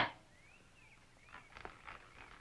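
A spoken word ends at the start, then it goes quiet with a few faint, short bird chirps and some faint soft sounds near the end.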